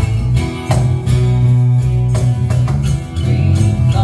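Live band playing an instrumental passage between vocal lines: strummed acoustic guitar over held electric bass notes.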